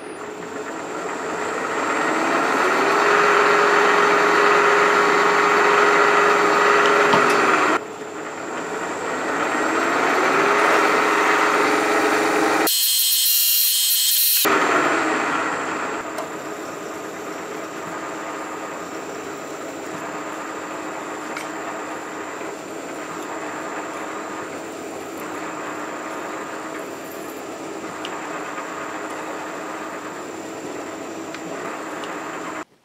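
Milling machine spindle running as a quarter-inch hole is drilled into a metal block, its tone rising to a steady pitch in the first few seconds. The sound cuts off abruptly twice, then settles into a quieter steady run as the hole is reamed.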